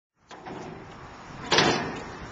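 A single loud bang about one and a half seconds in, over steady background noise.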